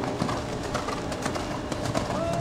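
Hoofbeats of a horse cantering on an arena's sand footing, heard as a run of short knocks, with brief bird-like calls over them.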